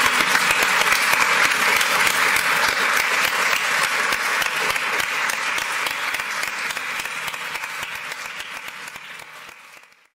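Audience applauding: dense, steady clapping that slowly fades over the last few seconds, then stops abruptly near the end.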